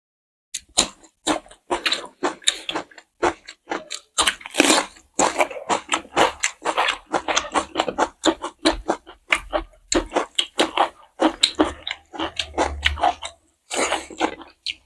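Close-miked chewing and mouth sounds of two people eating rice and curry by hand: a rapid, irregular run of short clicks and smacks that starts about half a second in.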